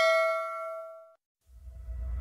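A notification-bell chime rings out with several bell tones and dies away about a second in. Near the end, low rumbling music fades in.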